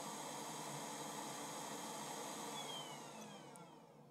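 Small electric blower fan running with a steady airy hiss, then spinning down and stopping near the end, its faint whine falling in pitch as it slows.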